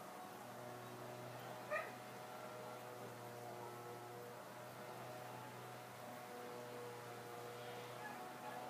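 One short, high, slightly rising squeal about two seconds in, over a faint steady hum.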